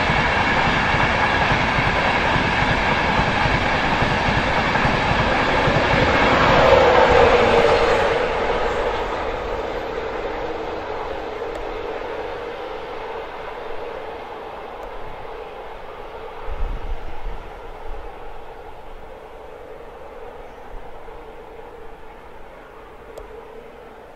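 InterCity 225 train hauled by a Class 91 electric locomotive passing at speed, with a loud rush and clatter of wheels on rail. A tone drops in pitch as the loudest part goes by about seven seconds in, and the sound then fades away.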